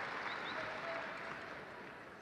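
Arena audience applauding, dying away gradually.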